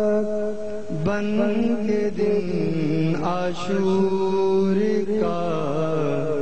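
A slow, wordless vocal chant: long held notes that slide and waver in pitch.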